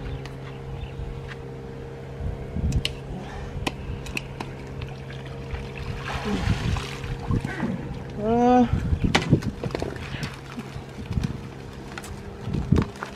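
A round mesh crab pot hauled up out of the water on its rope, water pouring and splashing off it about six seconds in, followed by a few knocks as it is set down on the pontoon. A steady low hum sits underneath throughout.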